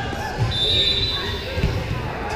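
A volleyball thudding twice on a gym floor, about a second apart, with a brief high squeal between the thuds, over the echoing chatter of spectators in a large gym.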